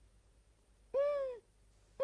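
A short, high, voice-like call about a second in, its pitch rising then falling over about half a second, and a second one starting right at the end: calls repeating about once a second.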